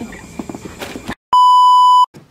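Edited-in test-tone beep used as a glitch transition: a single loud, steady high beep, like a TV colour-bars tone. It cuts in abruptly about a second in, after a moment of dead silence, and lasts under a second.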